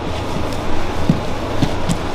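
Grappling partners shifting position on training mats: a few short, soft thumps and a sharper click near the end, over a steady background hum.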